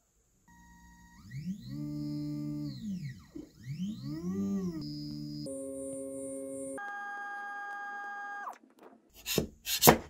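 Stepper motor of an Anycubic Photon M3 resin 3D printer whining as it drives the build plate. Its pitch rises and falls twice as the plate speeds up and slows down, then holds steady at one tone and then a higher one. Near the end come a few sharp knocks and scrapes of a metal scraper prying the resin print off the metal build plate.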